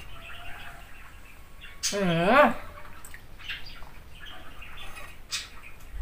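A brief hummed "er" from a woman about two seconds in. Around it, a few soft clicks of a metal spoon against the bowl as it scoops thick red bean soup.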